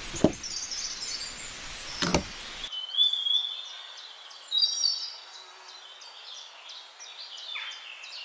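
Two sharp clicks as a thin tube is pushed onto the small fittings of a miniature water pump model, a moment in and again about two seconds in, the first the loudest. Birds chirp throughout, and after the first few seconds only the chirping is left.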